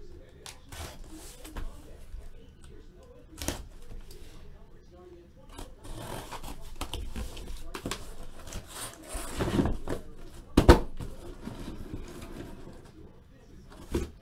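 A cardboard shipping case being cut open with a box cutter and pulled off the boxes inside: cardboard scraping and rustling, with small knocks, and one sharp thump about ten and a half seconds in.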